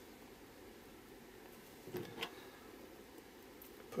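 Quiet room tone with two soft clicks about two seconds in, as a small metal embellishment is picked up and handled on a craft mat.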